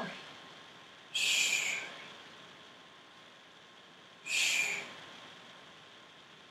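Two sharp hissed exhales, a 'shh' breathed out through the mouth, about a second in and again about three seconds later, each lasting under a second: breathing out on the effort of each leg lift.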